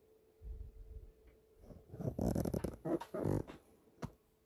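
Handling noise from the recording phone being picked up and repositioned: a soft bump, then a couple of seconds of rubbing and scraping against the microphone.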